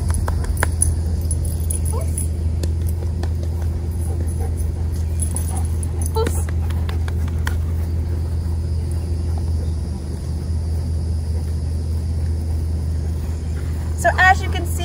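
A steady low rumble runs under everything, with a few faint clicks and jingles from the dog's leash and collar hardware as the dog walks at heel.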